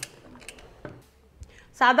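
Pressure cooker lid being closed and its handles brought together: a sharp click, then a few faint light knocks.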